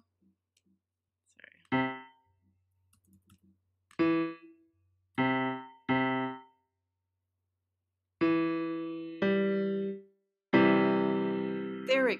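Soundtrap's Grand Piano virtual instrument played from a computer keyboard: short single piano notes about 2, 4, 5 and 6 seconds in, then two longer held notes, and near the end a C major chord (C, E and G) sustained together.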